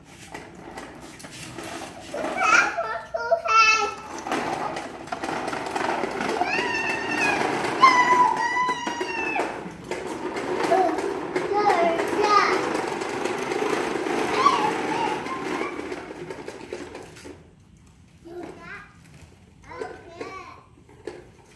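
A child's toy lawn mower playing its engine noise, rough and steady for about sixteen seconds before it cuts off suddenly, with a small child's squeals and calls over it.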